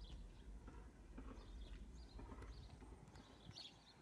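Near silence: faint outdoor room tone, a low steady rumble with scattered faint clicks.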